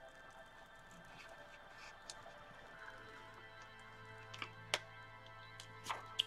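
Faint peeling of a thin Bible page lifted off a gel printing plate, with a couple of soft clicks near the end, over a faint steady hum.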